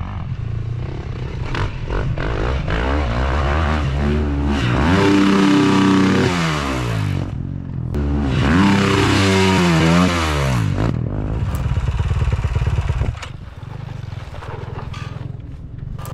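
Dirt bike engine revving hard twice, its pitch climbing and then falling away each time, with a steadier lower engine note before and after.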